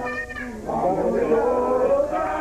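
People singing, with drawn-out notes that slide up and down in pitch.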